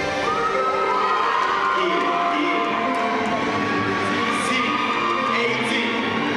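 Live stage song sung by a group with voices into microphones, long held and gliding notes, while the audience cheers and whoops over it.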